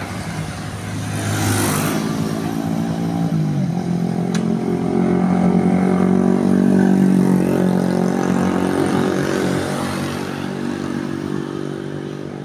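Motorcycle engines running close by, as motorbikes pass along the road and one stands beside the listener. The nearest engine's steady hum steps up in pitch about three and a half seconds in, is loudest around the middle and eases off toward the end.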